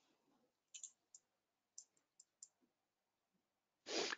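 Faint computer mouse clicks, about six short, sharp ones in quick succession between about one and two and a half seconds in, over near silence.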